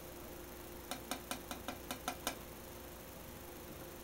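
Palette knife dabbing oil paint onto a stretched canvas: a quick run of light taps, about five a second, that stops a little past halfway.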